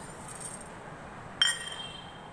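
Sugar tipped from a steel spoon onto coconut pieces in a steel grinder jar, a faint hiss, then about a second and a half in a single sharp metallic clink with a short ring as the steel spoon knocks against the steel jar.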